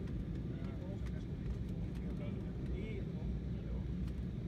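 Steady low rumble inside a jet airliner's cabin in flight, with faint voices of other passengers murmuring over it.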